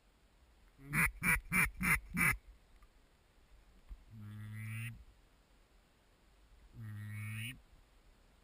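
Duck call blown in a run of five quick quacks that fall in pitch, then two long drawn-out quacks, each about a second, a couple of seconds apart.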